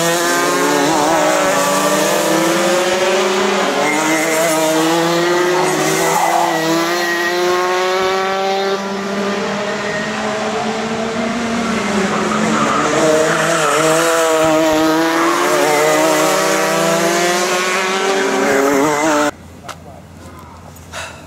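Several two-stroke kart engines racing on a circuit, their pitch climbing steeply as the karts accelerate and dropping as they lift off and brake, over and over as they pass. The sound cuts off suddenly near the end.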